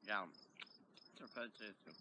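Insects chirping outdoors: short, high chirps repeating about four times a second, under a voice saying "yeah" and some further talk.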